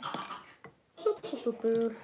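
A few light clicks and scrapes of a spoon on chocolate-coated moulds and bowls, then from about a second in a young child's high voice vocalising in the background.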